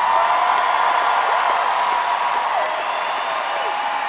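Large concert audience cheering, whooping and applauding as the song's music stops.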